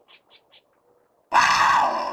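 Logo sound effect: four faint short chirps, then a sudden loud animal roar starting about a second and a half in.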